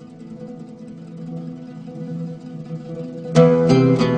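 Plucked-string music on ouds: a low chord rings on and slowly swells, then a little over three seconds in, loud plucked notes strike and the melody begins.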